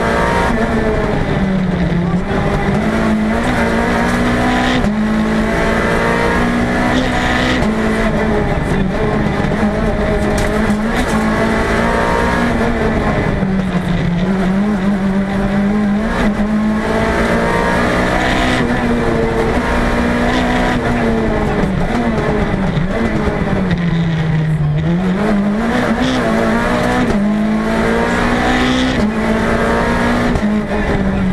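Peugeot 206 Group A rally car engine at full attack, heard from inside the cabin: the revs climb hard and drop sharply at each gear change, dipping lower several times under braking for corners, over steady tyre and road noise.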